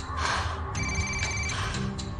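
A mobile phone ringing with an electronic ringtone: one ring of under a second near the middle, made of steady high tones. Background score music with low sustained notes plays underneath.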